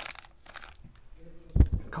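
A short rustle, then a single sharp low thump about one and a half seconds in, the loudest sound here.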